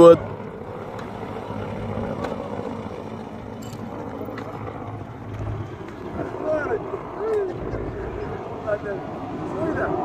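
Faint, distant voices calling out a few times over a steady rushing noise.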